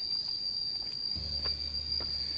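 A steady, high-pitched insect drone, one unbroken tone, with a low rumble joining a little over a second in.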